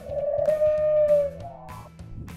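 A pigeon-like cooing call dubbed in as a Tyrannosaurus's voice. It is one long hooting note held steady for about a second, then sliding upward before it fades, over soft background music.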